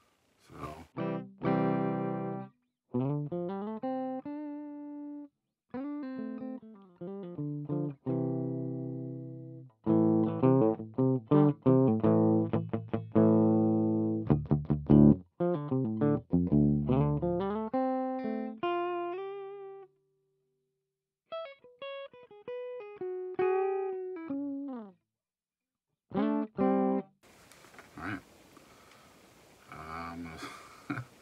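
Electric guitar played clean through a Dumble-style amp simulator (ML Soundlab Humble): chords and single-note lines with several string bends, stopping short a few times. A steady hiss takes over near the end.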